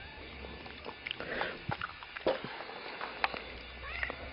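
A lab–shepherd mix dog sniffing at the grass, with faint scattered rustles and short clicks.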